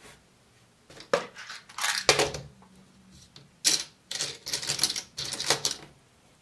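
Small metal objects clinking and rattling as they are handled, in several short bursts: one about a second in, the loudest around two seconds, then a quick run of them near the end.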